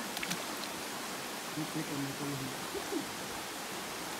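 Steady rushing of a shallow river flowing over rocks. There are a few short clicks near the start and a low voice talking faintly about two seconds in.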